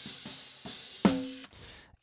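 Raw snare drum multitrack (top and bottom mics together) playing soloed: a few soft strokes, then one full hit about a second in that rings with a steady pitch, with hi-hat bleeding into the top mic. Playback cuts off suddenly about halfway through.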